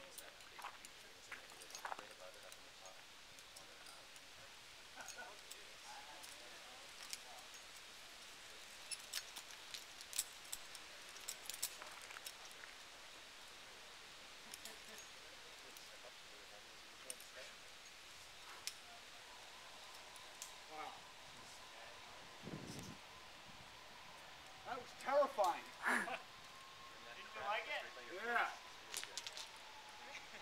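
Quiet outdoor ambience with scattered small clicks, and a faint steady whine in the last third that sinks slightly in pitch near the end. Near the end come a few short bursts of people's voices, the loudest sounds.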